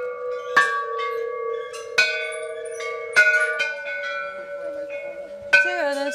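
Hanging metal wishing bells along a temple stair rail, struck one after another: four strikes, a second or two apart, each ringing on and fading. They are rung one per step as a worshipper climbs.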